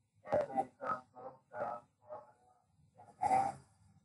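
A person's voice speaking in short, broken phrases over a video-call link, with a pause of about a second before a final short phrase.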